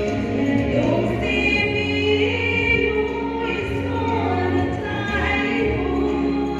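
Two women singing together into microphones over amplified music, with long held notes above a low bass line that moves in steps.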